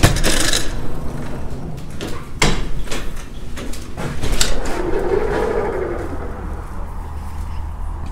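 Glass entrance doors being pushed open by their push bars, with a few sharp clacks of the bar and latch, about two and four seconds in. Once outside, a low steady rumble of wind on the microphone.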